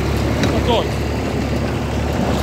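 Ford Dexta tractor engine running steadily while it pulls a working Massey Ferguson 15 baler through hay windrows, with a few short squeaks about half a second in.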